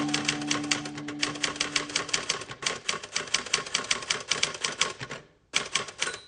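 Typewriter keys clacking in a quick, even run of about nine strokes a second, with a brief break near the end before a few more strokes.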